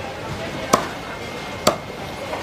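Two sharp chops of a cleaver cutting through fish onto a round chopping block, about a second apart.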